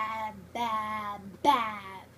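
A girl's voice singing three drawn-out 'baaa' syllables, each sliding down in pitch, with short breaks between them.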